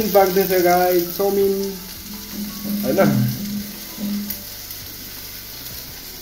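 Sliced vegetables sizzling steadily as they stir-fry in a wok, with a voice over the sizzle in the first couple of seconds and again briefly about three seconds in.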